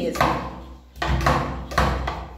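Hand trigger spray bottle squirting liquid three times, each squirt a sudden hiss that fades quickly, about one every 0.8 s.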